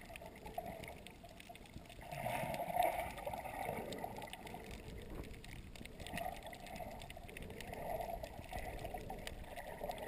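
Muffled underwater sound picked up by a submerged camera: water sloshing and gurgling in uneven swells, the strongest about two to three seconds in, with scattered faint clicks.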